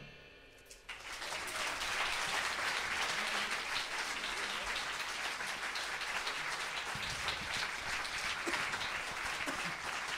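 The last chord of a big band dies away, and about a second later an audience breaks into applause that keeps up at a steady level.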